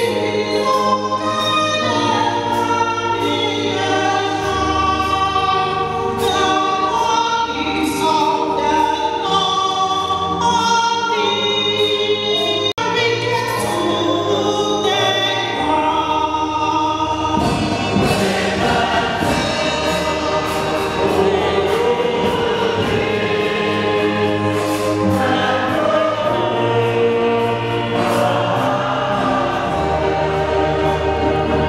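A choir sings a hymn, many voices holding notes over a steady low bass accompaniment. There is a brief break in the sound about 13 seconds in.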